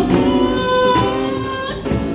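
Live acoustic band playing a Cantonese pop ballad: a woman singing into a microphone over two strummed acoustic guitars, with a cajón keeping the beat.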